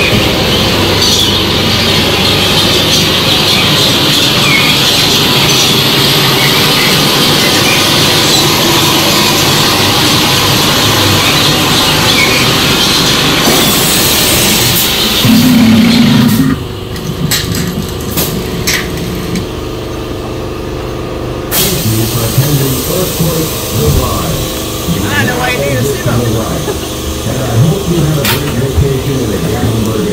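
Loud, dense noise of an indoor dark ride's soundtrack and effects, ending with a brief low hum and cutting off suddenly about sixteen seconds in. After that it is quieter, with voices and scattered clicks and knocks.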